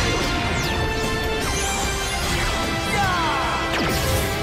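Transformation-sequence sound effects over the action score: quick swooshes that fall in pitch and a crash, laid over sustained music.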